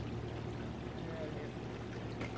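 Water running steadily, with a low steady hum beneath it.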